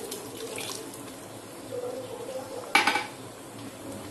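Milk being poured into a pot of cooked lentils and stirred in with a steel ladle in an aluminium pot, a soft liquid splashing. A single sharp metal clank of utensil on pot just under three seconds in is the loudest sound.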